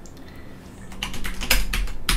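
Computer keyboard keys pressed in a quick run of about half a dozen clicks, starting about a second in.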